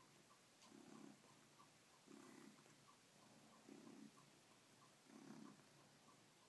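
Faint purring from a domestic cat as it kneads and sucks on a fleece dressing gown, swelling in waves about every second and a half. Small regular clicks run alongside, about three a second.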